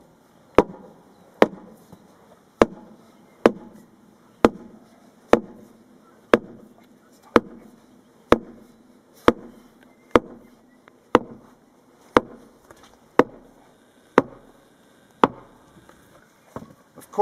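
A long steel fencing bar struck down into the ground around the post's stay, a steady run of about sixteen blows roughly a second apart, each a sharp thud with a short ring.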